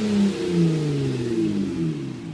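Muffler-deleted Honda Accord V6 exhaust dropping back from a rev: a steady drone that slowly falls in pitch as the engine speed settles.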